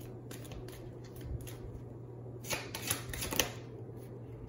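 Tarot cards being shuffled and handled: light scattered flicks, then a cluster of sharper card snaps about two and a half to three and a half seconds in.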